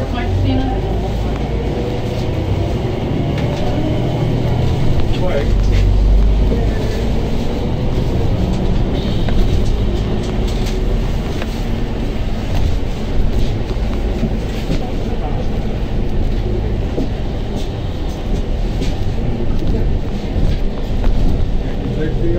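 Ride noise inside a moving city bus: a steady engine and road rumble with small rattles and clicks, and faint voices of passengers.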